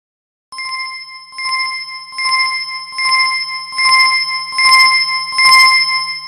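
Bicycle bell rung over and over, seven rings at an even pace of a little more than one a second, each louder than the last.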